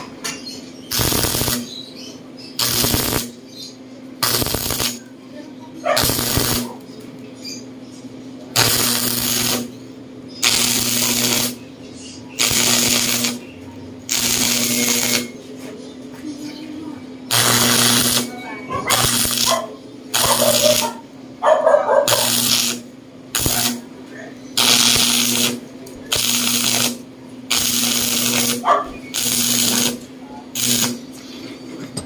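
Stick (electrode) arc welding, struck in short repeated bursts of about one every two seconds as a steel bender die is tacked and stitched, with a steady low hum underneath.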